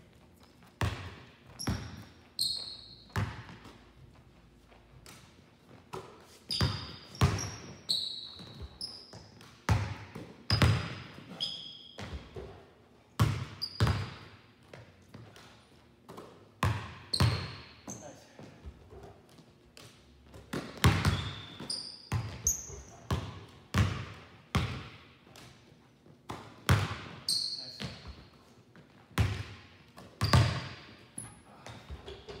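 Basketballs dribbled and bouncing on a hardwood gym floor, irregular sharp thuds about once or twice a second, with brief high squeaks of sneakers on the court in between.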